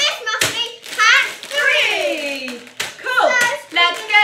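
A young girl and a woman talking excitedly, with one long exclamation sliding down in pitch in the middle. A few sharp clicks and crinkles of plastic bags of Lego pieces being handled on the table.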